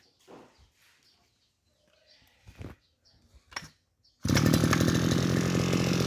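Hitachi CG33 brush cutter's 33 cc two-stroke engine coming in suddenly about four seconds in and running loud and steady, after a few faint knocks.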